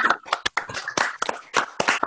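Several people clapping at once, heard through a video call's audio as many unmuted microphones mixed together, the claps falling irregularly.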